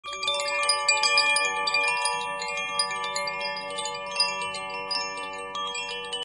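Chime music: many bell-like notes ringing and overlapping, growing a little fainter toward the end.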